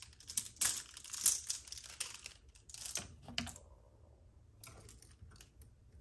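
Clothes hangers clicking and clattering against one another and the closet rod as they are handled. The clicks come thick and fast for about three seconds, then thin out to a few scattered ones.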